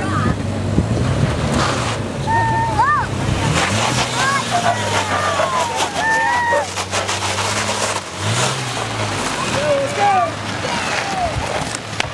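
Toyota FJ Cruiser's 4.0-litre V6 engine working under load as the truck crawls up a steep rock slab, a steady low drone whose revs rise and fall about four seconds in and again around eight seconds in. Onlookers' excited voices call out over it.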